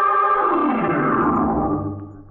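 Radio drama opening sting: a loud sustained tone made of several pitches together that slides downward in pitch from about half a second in and fades out near the end.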